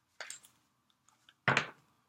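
A deck of oracle cards being shuffled by hand: two brief card sounds, a faint one just after the start and a louder one about a second and a half in.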